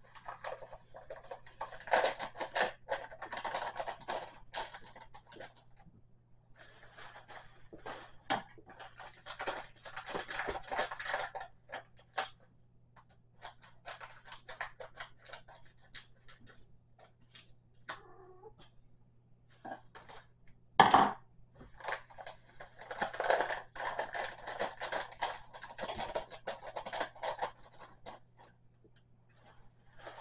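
Paper packet of chocolate pudding mix being torn open, shaken and emptied into a mixing bowl, crinkling and rustling in three long bursts. One sharp knock, the loudest sound, comes about two-thirds of the way through.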